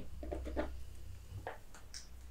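Quiet handling of small objects: a few soft rustles and light taps over a low, steady hum.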